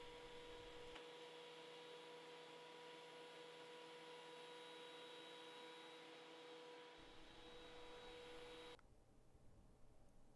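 Near silence: a faint steady hum over room tone, which drops away shortly before the end.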